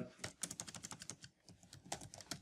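Computer keyboard typing: a quick, uneven run of faint key clicks.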